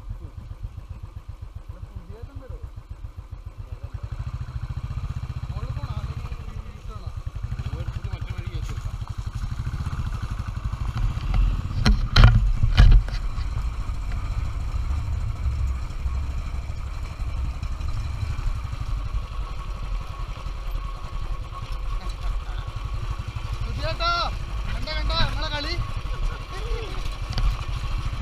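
Royal Enfield Electra 350 single-cylinder engine ticking over, then pulling away and running at low speed along a rough dirt track, its engine getting louder about four seconds in. A few loud knocks come about twelve seconds in as the bike jolts over the rough ground.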